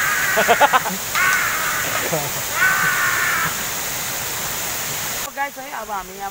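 Steady rush of a waterfall with three loud, harsh calls over it in the first three and a half seconds. The water noise stops abruptly about five seconds in, and a voice-like sound follows.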